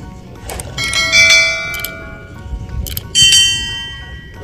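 Sound effect of a subscribe-button animation: a sharp mouse click followed by a bright, ringing bell chime, heard twice, about a second in and about three seconds in.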